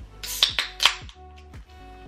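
Aluminium beer can pulled open by its tab: two sharp cracks with a hiss of escaping gas within the first second, over background music.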